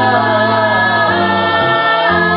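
A mixed group of male and female voices singing together in harmony, holding long notes over a low, steady accompaniment.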